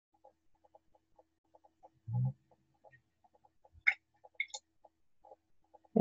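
Quiet handling noise: faint irregular ticking, a short low thump about two seconds in, and a few sharp little clicks around four seconds in as a glass test tube and dropper are worked.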